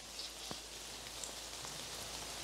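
Steady rain falling on the leaves and twigs of the woodland canopy, a soft even hiss with a few separate drops ticking close by.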